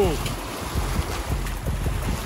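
Wind buffeting the microphone over water rushing and splashing past a moving boat: a steady rough noise with a low rumble.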